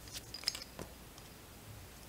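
A quick cluster of small clicks and rustles from hands handling fly-tying thread and tools at the vise, the loudest a brief, bright metallic tick about half a second in, followed by a couple of faint ticks.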